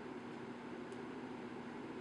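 Faint steady background hiss with a low hum: room tone, with no distinct sound event.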